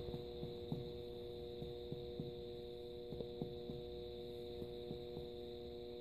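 Faint, evenly spaced finger-on-finger percussion taps on a man's abdomen, about two or three a second, over a steady electrical hum. The examiner is percussing from the midline out toward the flank to find where the resonant note turns dull, in a test for ascites.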